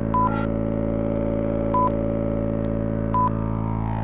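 Electronic synthesizer music with a sustained drone and three short beeps, each about a second and a half apart.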